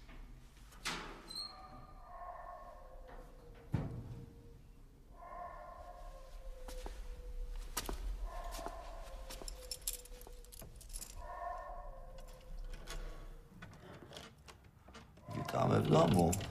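A person's voice making drawn-out, wordless sounds in repeated phrases every few seconds, with a few sharp knocks between them and a louder burst near the end.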